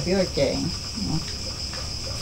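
Steady high-pitched insect chorus, unbroken throughout. A woman's voice trails off in the first second.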